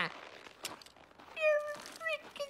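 A short, high-pitched cry about one and a half seconds in, falling slightly in pitch. A faint click comes before it.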